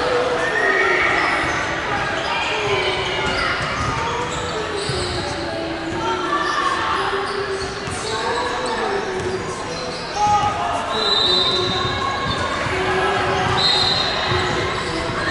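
Basketballs bouncing on a hardwood court amid players' chatter, echoing in a large indoor sports hall.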